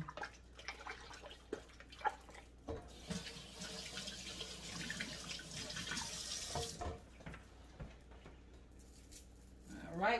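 Kitchen sink faucet running faintly for about four seconds as hands are washed under it, with a few light knocks and clacks just before and as it stops.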